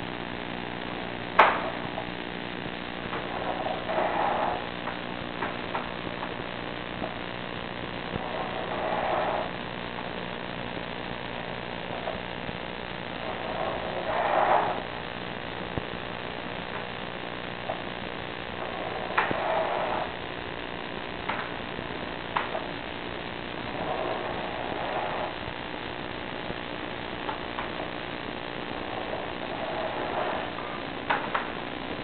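Sewer-inspection camera rig: a steady electrical hum, with a short scraping rush about every five seconds as the push cable is pulled back out of the pipe, and a few sharp clicks, the loudest about a second and a half in.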